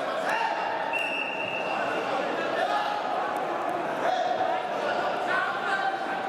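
Reverberant wrestling-hall din of many overlapping voices and shouts, with a few dull thuds. A steady high whistle tone sounds for about a second and a half, starting about a second in: the referee's whistle starting the bout.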